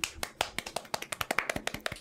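Rapid, irregular hand claps and taps, roughly ten a second: a short round of applause from a few people.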